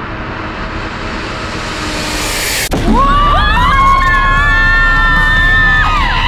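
A rising whooshing noise swells for about two and a half seconds and cuts off abruptly. Then several women scream together in long, high, held screams over a low rumble.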